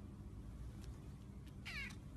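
A cat gives one short meow near the end, falling in pitch.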